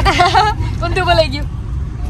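People's voices talking in short phrases, over a steady low rumble.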